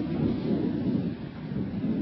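Outdoor background rumble with no clear pitch, dipping a little past the middle and then swelling again.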